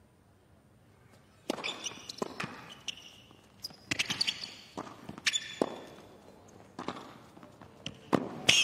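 A tennis rally on a hard court: sharp racquet-on-ball hits and ball bounces, with short squeaks of tennis shoes on the court, starting about a second and a half in after a near-silent start.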